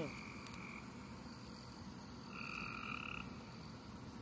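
Frogs calling with long, even trills: one lasting just under a second at the start, and another of about a second a little over two seconds in, over a faint steady high-pitched hiss.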